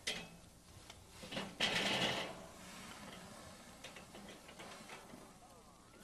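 Metal tongs clicking against the grill grate as racks of lamb are turned over on a charcoal grill, with a brief hiss of sizzling about one and a half seconds in. After that a faint low hiss with a few light clicks.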